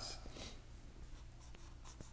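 Faint scratching of a highlighter on a paper page, with a few light ticks, over a steady low hum.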